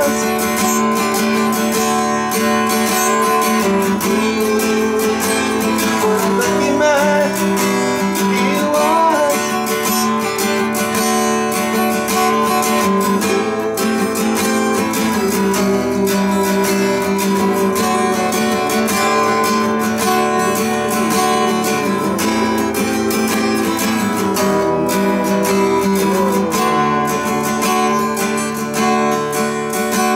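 Steel-string acoustic guitar strummed steadily through Am, Em and D chords. A man's voice sings a wordless 'Ooo' melody over it in a few stretches.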